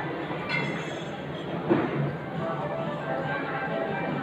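Background music playing in a busy indoor shopping space, over a hubbub of indistinct voices, with a brief clink or knock a little before the middle.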